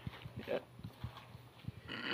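Faint scattered clicks and rustles of stones and newspaper wrappings being handled. Right at the end a loud voiced sound starts, sliding down in pitch.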